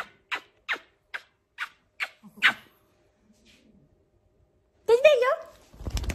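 A small dog making a quick series of short, high yips, two or three a second, then a wavering whine about five seconds in, followed by loud rustling of bedding.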